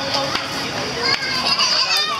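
Children playing: many young voices shouting and chattering at once, with adults talking among them.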